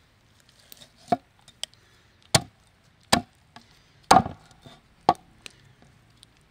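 Meat cleaver chopping through raw chicken into a wooden cutting board: five heavy strikes roughly a second apart starting about a second in, with a few lighter knocks between them.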